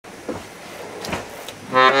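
A few faint knocks and rustles of handling close to the microphone, then, near the end, a piano accordion starts playing loudly, sounding a melody over held chords.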